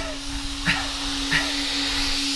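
Mouth-made sound effect of air hissing out of a spaceship valve as it is forced open: a steady hiss over a low steady hum. Three short grunts of effort come about two-thirds of a second apart.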